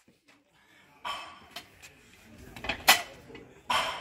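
Metal clinks and rattles from a loaded barbell and its iron weight plates as the bar is taken off the rack and pressed overhead, starting about a second in, with one sharp clank near three seconds in.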